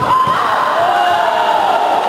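Spectators cheering and shouting, rising suddenly at the start, with a few long, drawn-out shouts.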